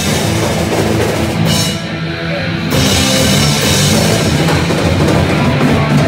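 A live rock band playing loudly, with the drum kit prominent. About a second and a half in, the cymbals and high end drop out for roughly a second, then the full band comes back in.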